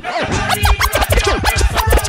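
DJ scratching on the decks over a dancehall beat: a run of quick back-and-forth pitch sweeps cut against heavy bass hits.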